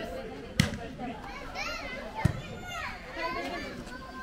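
A volleyball being struck twice during a rally, two sharp slaps about a second and a half apart, the second the louder. Players and young spectators call out and shout around them.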